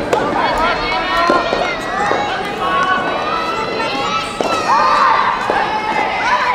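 Soft tennis rally in a sports hall: several sharp racket strikes on the rubber ball, under steady overlapping shouts and cheers from the spectators and team benches.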